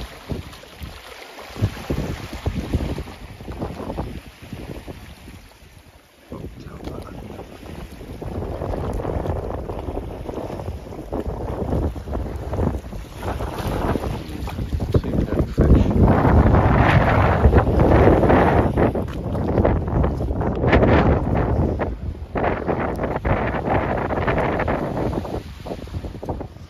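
Wind gusting across the microphone over small waves lapping at the rocks: an uneven, rumbling rush that is loudest about two-thirds of the way through.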